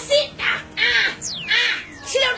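A bird calling repeatedly: short arched calls about two a second, with a quick falling whistle about a second in.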